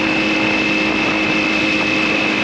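Honda CB900F Hornet's inline-four engine running at steady revs while the motorcycle cruises, its pitch holding constant.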